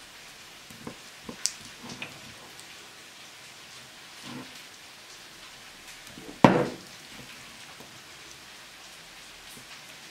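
A plastic server taps and scrapes against a ceramic baking dish as a piece of baklava is worked loose and lifted out. A few light clicks come early, then one louder knock about six and a half seconds in, over a steady hiss.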